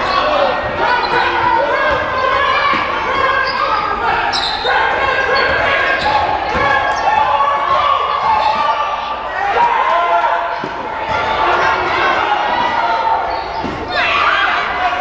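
A basketball bouncing on a hardwood gym floor during play, with many short thuds, mixed with shouting and calling voices of players, coaches and spectators, all echoing in a large gymnasium.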